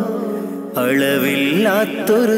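Mappila song: a softer held note, then a voice comes in about three-quarters of a second in, singing an ornamented melody with bending pitch over instrumental accompaniment.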